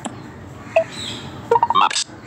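Android screen-reader voice (TalkBack-style speech synthesis) announcing "Maps" near the end, after the back button is pressed. Before it there is only faint hiss and one brief high blip.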